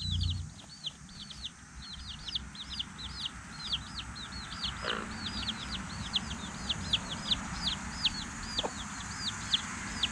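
Baby chicks peeping without pause, a rapid string of high calls about four a second, each dropping in pitch. A hen clucks briefly about halfway through.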